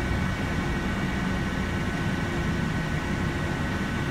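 Cabin sound of an airport automated people mover running along its guideway: a steady low rumble from the moving car with an even, high electric whine over it.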